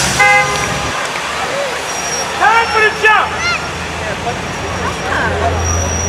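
A short, single vehicle horn toot just after the start, over steady street traffic noise. A few seconds in come several brief shouted calls that rise and fall in pitch.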